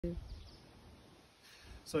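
Quiet outdoor background: a low, steady rumble with a few faint bird chirps, opening with a brief pitched tone, before a man starts speaking near the end.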